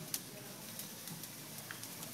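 Faint, steady background hiss with a soft click just after the start and another, fainter one near the end.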